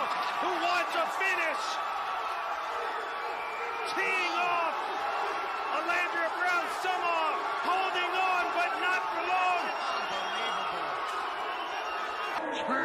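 Several voices shouting and calling out over one another, with a few short thuds of punches landing.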